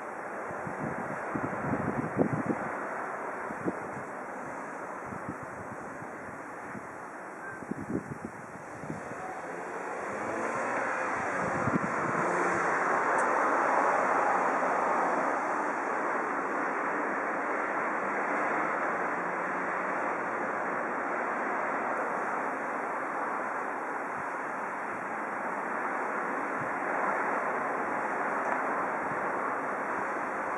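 Wind buffeting an outdoor microphone over a steady rush of noise, with low thumps in the first few seconds and again near eight seconds; the rush swells about ten seconds in and stays louder.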